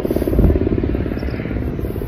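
A low, fast-pulsing motor drone that holds steady.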